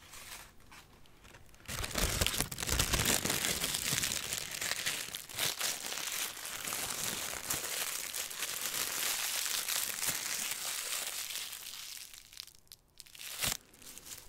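Sheet of crinkly purple plastic crinkled and crumpled in the hands close to the microphone. It is a dense, continuous crackle starting about two seconds in and fading out near the end, followed by one sharp click.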